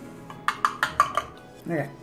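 A spoon clicking and scraping against a plastic dog-food tray while wet dog food is scooped out: about five quick clicks in under a second, starting about half a second in.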